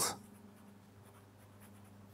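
A fine-tipped pen scratching faintly on paper as a word is written by hand, over a faint steady low hum.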